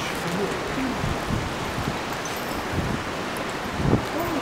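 Steady hiss of light rain falling, with faint voices low in the background.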